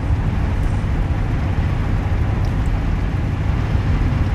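Steady low rumble of outdoor background noise, with no other distinct sound.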